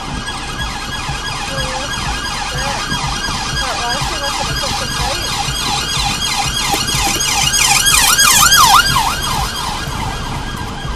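Several police vehicle sirens sounding together, their pitch sweeping up and down rapidly and overlapping, growing louder and loudest about eight seconds in as one comes close.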